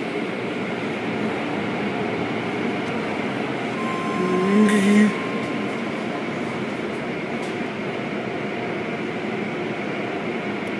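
Automatic car wash running: rotating blue cloth brushes and curtain strips scrubbing a car, heard through the glass of a viewing window as a steady rushing noise. About four seconds in, a brief, louder pitched sound rises over it for about a second.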